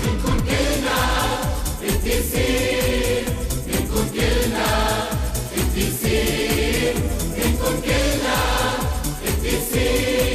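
A Christian children's hymn: voices singing together over a backing track with a steady beat.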